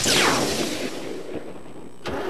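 Cartoon sound effect of a car speeding off: a sudden whoosh with a falling pitch that dies away over about two seconds.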